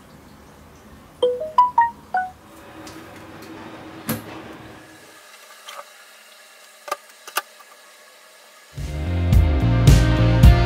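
A phone notification chime, a quick run of five short pitched notes rising then falling, about a second in. A few scattered clicks follow over quiet room noise, then music with a drum beat comes in near the end and is the loudest sound.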